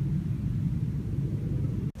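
A low, steady rumble with no distinct events, cutting out abruptly for an instant just before the end.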